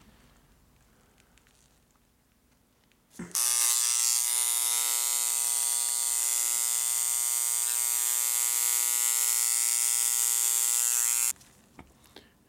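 Dremel electric engraver running, its reciprocating tip buzzing steadily as it engraves. The buzz starts about three seconds in, holds at one even pitch for about eight seconds, and cuts off suddenly near the end.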